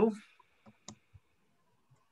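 Three faint, quick clicks about a second apart from a computer mouse or keys on the far end of a video call, just after a word trails off.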